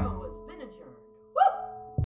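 Soft background music with sustained, steady tones, fading down from a burst of voice just before; a short vocal sound comes in about a second and a half in.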